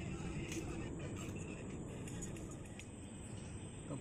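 A steady low hum under a background hiss, with a few faint clicks.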